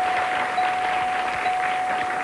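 Game-show puzzle board chiming as each letter lights up: one bell tone, struck again about once a second, over steady audience applause.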